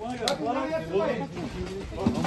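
Voices of several people talking, with a single sharp click about a quarter second in.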